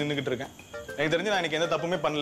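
A man speaking, with a short pause about half a second in.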